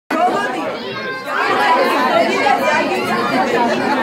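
Many children's and adults' voices chattering and talking over one another in a crowded room.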